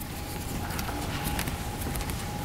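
Scattered light clicks and knocks over a steady faint hum.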